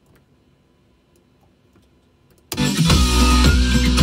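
Near silence, then music with a steady beat and guitar starts abruptly about two and a half seconds in and plays on loud.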